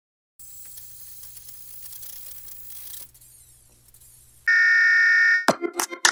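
Countdown-leader intro sound effects: a faint crackling hiss with a low hum for about four seconds, then a loud, steady electronic beep lasting about a second. Sharp percussive hits start just after the beep as intro music begins.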